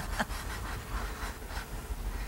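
Faint scratching of chalk pastels on easel paper, a few soft strokes over a low steady room hum.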